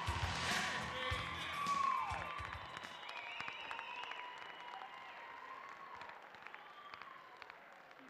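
Dance music with a beat stops about two and a half seconds in. Audience applause and crowd voices follow, dying away.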